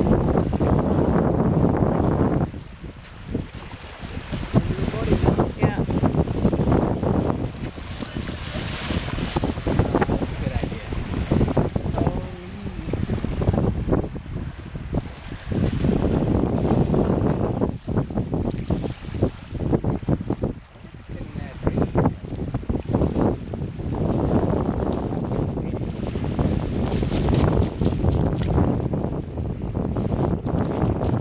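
Wind buffeting the microphone in uneven gusts, with small waves washing up onto a sandy shore.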